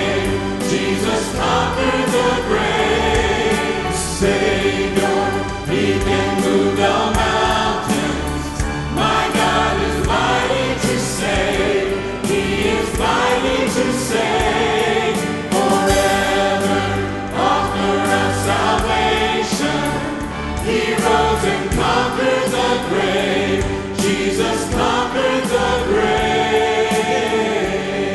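A mixed vocal group of men and women singing a gospel song in harmony into handheld microphones, over live instrumental backing with a steady beat.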